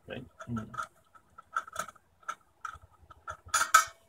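A small hydrogen cylinder being unscrewed from its filling valve: a run of small clicks from the turning threads, then near the end a sharp double pop as the cylinder comes free and the trapped hydrogen pressure escapes.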